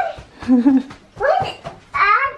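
A young child's excited high-pitched voice: a few short, rising cries mixed with laughter.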